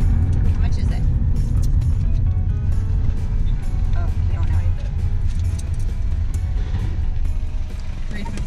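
Steady low road and engine rumble inside a moving BMW's cabin, with background music over it.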